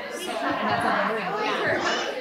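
Speech only: a woman talking, with other women's voices chattering.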